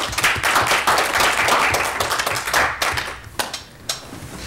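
Applause from a small group of people: many hands clapping together, thinning out to a few last single claps near the end.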